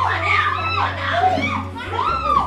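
Several high-pitched women's voices shouting and shrieking over one another, with a steady low hum underneath.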